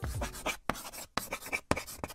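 Pen scratching on paper in quick, irregular strokes, a handwriting sound effect.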